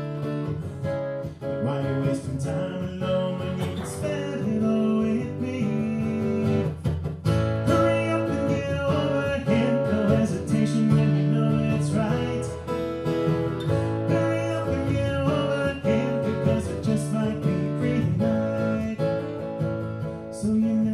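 Acoustic guitar strummed in a steady rhythm, playing chords through an instrumental passage of a folk-rock song.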